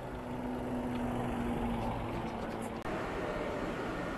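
A steady engine drone with a low hum over outdoor noise, cut off abruptly about three seconds in and replaced by the even noise of a large indoor hall.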